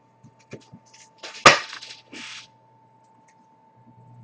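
Trading cards and foil card packs being handled on a glass-topped table: a few light clicks and one sharp tap about a second and a half in, with short rustles of card wrappers.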